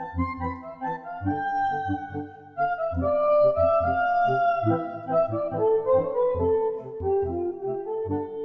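Live acoustic music: a clarinet-like wind instrument plays a melody that slides between notes, over a morin khuur (Mongolian horsehead fiddle) bowing a steady, pulsing rhythm low down.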